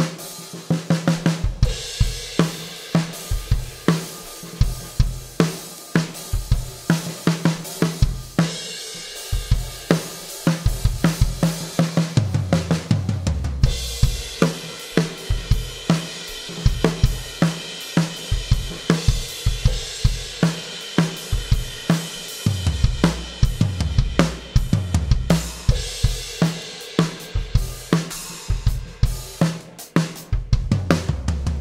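A Pearl Decade Maple drum kit played in a full groove: 20-inch bass drum, deep 14x8 snare, 14- and 16-inch floor toms and Anatolian cymbals (dry hi-hat, crashes, ride). Deep low tom passages come in about twelve seconds in and again in the second half, and from about fourteen seconds the cymbals wash more heavily.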